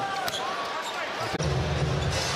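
NBA game sound in a basketball arena: short sneaker squeaks on the hardwood and ball bounces over the crowd's murmur. About 1.4 s in, a deeper, steadier arena rumble comes in.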